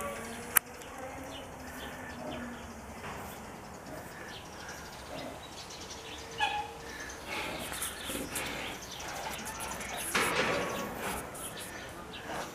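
Outdoor ambience with small birds chirping now and then, and a single sharp click about half a second in.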